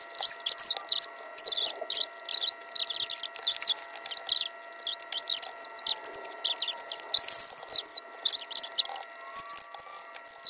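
Crinkly rustling of paper pages being handled and turned, in quick irregular bursts, with a brief squeaky scrape about seven seconds in.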